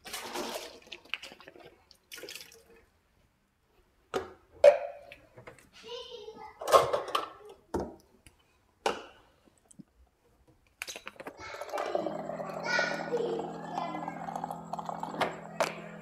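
A plastic baby bottle and formula container being handled on a kitchen counter: a scatter of short clicks and knocks. Over the last few seconds comes a steadier run of water with a low hum, as the bottle is filled.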